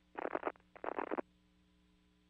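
Two short bursts of crackly, band-limited noise over a faint steady hum, ending about a second in.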